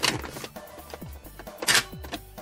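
Two sharp clicks from the hard plastic parts of a toy robot being handled: one at the start and a louder one near the end. Background music runs throughout.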